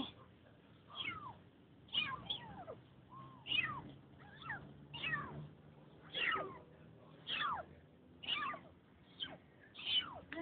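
Kittens mewing again and again: short, high-pitched calls that fall in pitch, about one a second.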